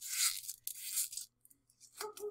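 Foil shield of Ubiquiti TOUGHCable being peeled back by hand off the wire pairs: two short, crinkly tearing rasps in the first second or so, then a few faint crackles.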